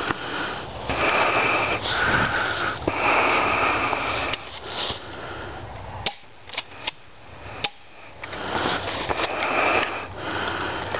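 Heavy breathing close to the microphone, in long, loud breaths. A little past the middle comes a quieter stretch with a handful of sharp clicks, then the breathing picks up again near the end.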